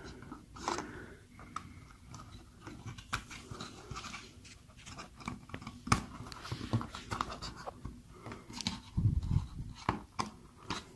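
Faint handling noise and small clicks from fingers working thermostat wires into the Nest base's push-in terminals, with a sharper click about six seconds in.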